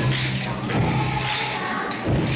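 A group of children tapping pairs of rhythm sticks in time with music, the sticks giving repeated clicks over held low notes and the children's voices.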